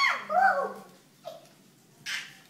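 A toddler's short, high-pitched cries, each falling in pitch: two close together, then a brief third one about a second later.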